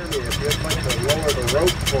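1886 Benz motor carriage's single-cylinder engine running at a standstill: a rapid, even clicking about ten times a second over a low rumble.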